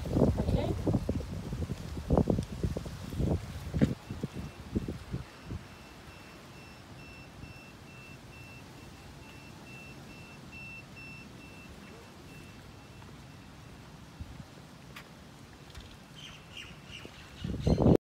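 Wind buffeting the microphone in gusts for the first few seconds, then a quieter stretch with a faint, high, evenly pulsing tone. Birds chirp near the end.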